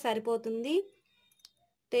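A woman speaking for about the first second, then a short pause with one faint click in the middle of it.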